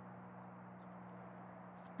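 Near silence: a faint, steady background hiss with a low hum, and no distinct sound event.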